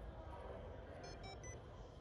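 Quiet low background hum of an indoor corridor, with three quick, faint electronic beeps about a second in.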